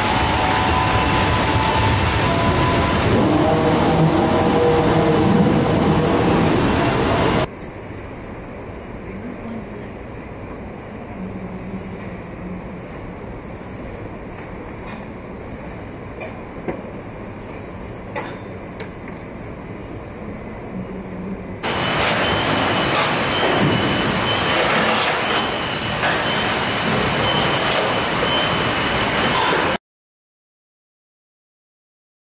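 Vehicle assembly plant noise in three cuts: a loud steady rush of air and spray in a robotic paint booth for the first several seconds, then much quieter assembly-line background with a low hum and scattered clicks and clanks. Loud line noise returns about three-quarters of the way through and cuts off suddenly just before the end.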